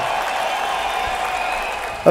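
Audience applauding, steady, easing off slightly near the end.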